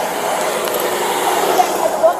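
Steady rushing noise picked up by a police body camera's microphone, with faint voices under it near the end.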